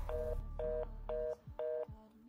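Telephone fast busy (reorder) tone: four short two-note beeps, about two a second, heard in the handset, the signal that the call has been cut off and no one is on the line.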